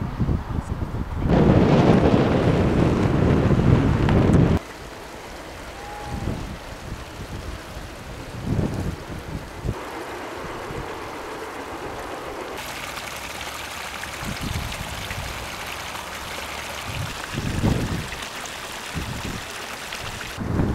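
Wind buffeting the microphone: a strong gust about a second in that lasts about three seconds and cuts off suddenly, then lighter irregular gusts over a steady hiss.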